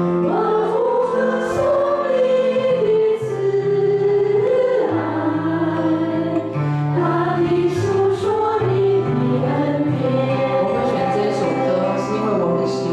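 A small worship group of women singing a Chinese praise song together in Mandarin, with sustained melodic lines, accompanied by acoustic guitar and piano.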